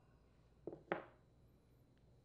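Two light knocks about a quarter second apart, the second louder, from a metal carburetor and wrench being handled and set down on a cloth-covered bench.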